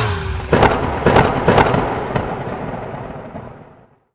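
A string of sharp firecracker bangs, some in quick pairs, as the New Year song closes, with a rumbling tail that fades out to silence.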